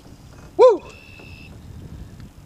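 A person's short whoop of excitement about half a second in, its pitch rising and then falling, followed by a faint steady high tone lasting under a second.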